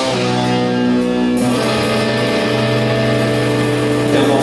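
Rock band playing live, electric guitar and bass holding sustained, ringing chords, with a chord change about a second and a half in.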